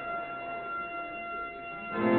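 Church organ holding a soft, steady high chord, with a louder, fuller chord with lower notes coming in right at the end.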